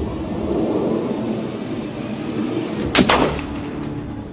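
A large-calibre sniper rifle fires a single loud shot about three seconds in, followed by a short echo, over a steady background noise.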